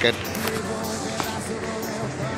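Background music playing, with voices over it.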